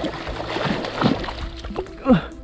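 Water splashing and sloshing around a landing net as a large trout thrashes in shallow creek water, in irregular splashes.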